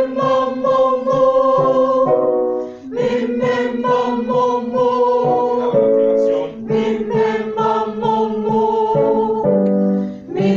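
A group of mostly women singing a vocal warm-up in unison on short repeated syllables like "mi, me, ma, mo", in phrases of a few seconds that change key from one phrase to the next. A keyboard sounds briefly between the phrases.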